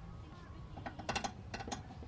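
Light, irregular metallic clicks over about a second as a 10 mm bolt on the intake piping is turned out by hand.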